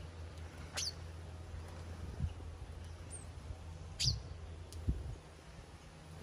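Small birds chirping: two sharp, high, falling chirps, one about a second in and one about four seconds in, over a steady low rumble with a couple of soft thumps.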